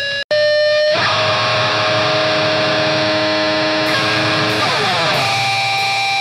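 Grindcore recording: a split-second cut-out as one track ends and the next begins, then distorted electric guitar holding ringing chords, sliding down in pitch near the end.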